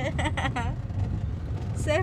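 Steady low rumble of a car driving, heard from inside the cabin, with short high-pitched voice sounds near the start and again just before the end.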